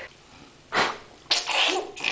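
A toddler's short, breathy bursts of breath and laughter: a sharp puff about three-quarters of a second in, then a longer breathy laugh near the end.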